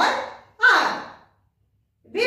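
A woman's voice making two short vocal sounds, the second breathy and falling in pitch, then the sound cuts out to complete silence about halfway through.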